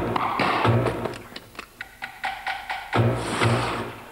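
Short percussive music sting: deep bass hits under quick, irregular clicking strikes, cutting in sharply and dying away near the end.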